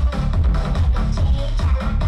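Electronic dance music mixed by a DJ and played loud over a sound system, with a steady kick drum about twice a second under a repeating bass line.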